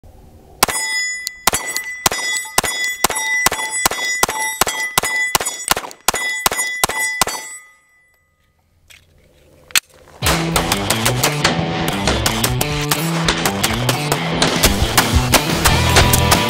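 A 9mm Glock 19 pistol fired in a steady rapid string of about fifteen shots, roughly two a second, with ringing between them, until the magazine runs dry. After a short near-silent pause and a click, heavy rock music starts about ten seconds in.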